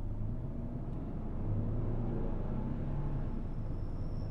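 Low, steady rumble of a car driving, heard from inside the cabin.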